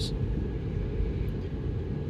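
Steady low rumble of a car heard from inside the cabin, with nothing sudden over it.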